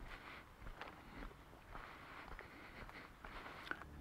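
Faint footsteps on a dirt woodland path, soft irregular scuffs about every half second.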